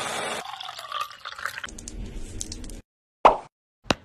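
Electric mini food chopper running, blending chunks of green vegetable with milk in a wet, churning sound that thins out after about two seconds. A single sharp knock follows a little over three seconds in.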